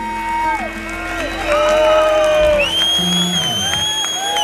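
A live rock band with electric guitars and drums plays the last held notes of a song, and the drums and bass drop out about two-thirds of the way in. A crowd cheers, with a long, high, steady whistle over it.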